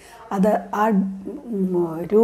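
A woman's voice talking steadily, with a brief pause at the start; only speech.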